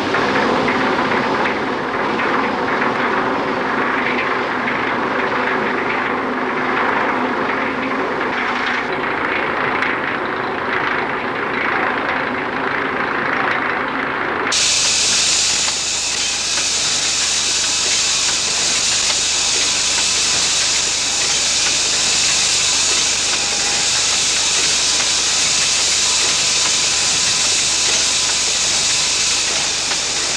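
Rumbling, clattering machinery noise that cuts off abruptly about halfway, giving way to a loud, steady hiss of steam from a colliery steam winding engine.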